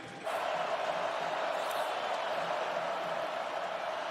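Large stadium crowd making steady, sustained noise that cuts in suddenly about a quarter second in.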